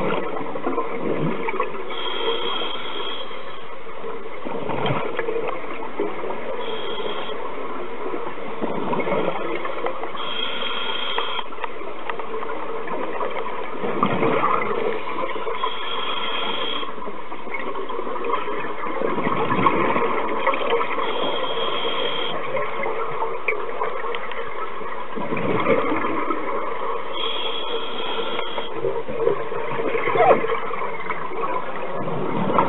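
Scuba diver breathing through a regulator underwater: a hiss on each inhale, then a burst of exhaust bubbles on each exhale, in a slow cycle about every five to six seconds.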